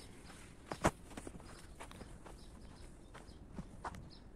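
Footsteps walking at an irregular pace. A few light steps are spread through, with two louder ones, one about a second in and one near the end.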